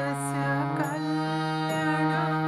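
Harmonium playing a slow devotional melody over a steady held low note, its reeds sounding notes that change about every half second, with a voice singing along in a wavering line above.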